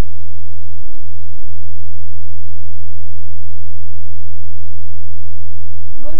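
Loud steady electrical hum, a low buzzing tone with faint higher whine lines, with two brief dropouts about a second in. It is a fault on the broadcast audio during a live phone link to the studio that is having connection trouble.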